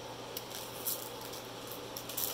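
Clear plastic film over a diamond-painting canvas rustling and crinkling faintly a few times as it is handled, over a low steady room hum.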